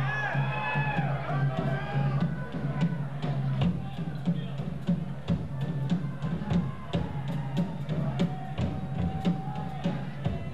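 A live rock band starting a song: guitar and other pitched sounds in the first couple of seconds, then the drum kit comes in with a steady beat, with crowd noise under it.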